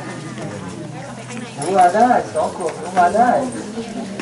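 Speech: a woman talking close by, with other people's voices around her; the first second and a half is quieter.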